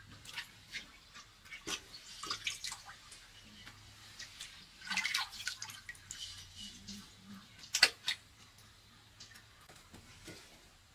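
Water dripping and splashing into a pot of water as bamboo shoots are rinsed and handled, with scattered small clicks. Two sharp clicks about eight seconds in are the loudest sounds.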